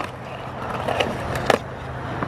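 Skateboard wheels rolling on concrete, with a sharp clack of the board on a ledge right at the start and two smaller clacks about one and one and a half seconds in.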